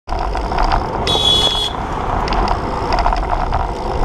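Steady wind and road noise on a moving bicycle's handlebar microphone, with a brief high-pitched squeal about a second in.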